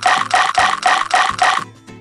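A rapid rasping rattle in seven loud, evenly spaced bursts, about four a second, that stops suddenly about a second and a half in.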